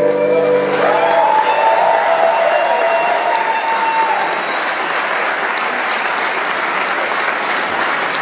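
A folk-rock band's song ends, and about a second in a large concert hall audience breaks into loud applause that carries on steadily while a last note dies away.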